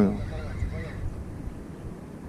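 Steady low rumble of wind and handling noise on a body-worn camera as a spinning reel is cranked fast on a lure retrieve. A man's short reply ends just at the start, and faint voices follow briefly.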